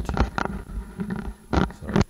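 Handling noise from a stethoscope being worked in the hands: irregular knocks, taps and rubbing on its tubing and metal earpiece.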